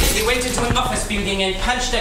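A performer's voice speaking on stage in a theatrical manner, the words not made out.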